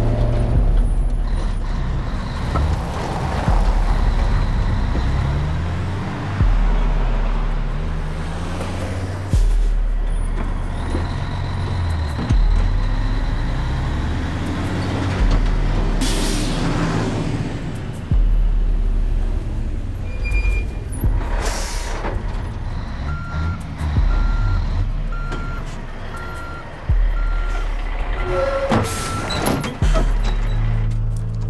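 Film soundtrack of a heavy cargo truck driving, its engine running under a low, pulsing music score. There are a couple of loud hissing bursts midway, and a regular beeping repeats over the last several seconds.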